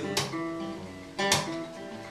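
Acoustic guitar strummed: two chords about a second apart, each left to ring and fade.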